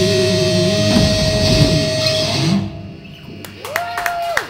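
Metal crossover band playing live: a held electric guitar note rings over a final flurry of drums and low chords, and the music cuts off abruptly about two and a half seconds in, ending the song. Near the end a voice shouts out in the quieter room.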